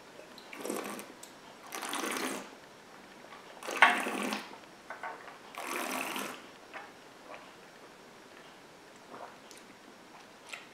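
A person breathing hard in and out through the mouth while holding a sip of whisky: four breathy puffs about two seconds apart, the third the loudest, then a few faint clicks.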